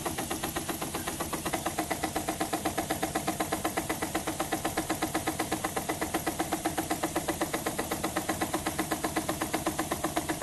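Small model steam engine built from a KLG spark plug, running on compressed air: a fast, even beat of exhaust puffs and light mechanical clatter, about seven a second. It is running smoothly now that it has bedded in.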